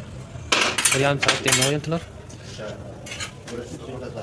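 A perforated metal skimmer scraping and clinking against a large metal cooking pot while parboiled rice is scooped and dropped for biryani. The scrapes come in short strokes, and there is a second brief scrape about three seconds in.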